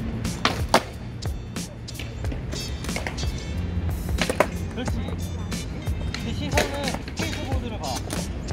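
Skateboards knocking and clacking on concrete as riders hop on stationary boards: a few sharp knocks, the loudest about a second in, with background music throughout.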